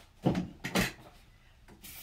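Two dull knocks about half a second apart from a metal step-on trash can, as used gloves are dropped in and its lid clacks.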